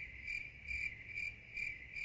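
Cricket chirping sound effect: a steady high chirp pulsing about two or three times a second, the stock 'crickets' gag for an awkward silence.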